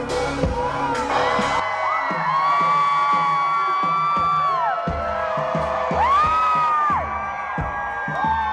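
Live pop-rock band playing on stage with crowd cheering; the drums and bass drop out for a few seconds under long held notes that swoop in pitch, then come back in.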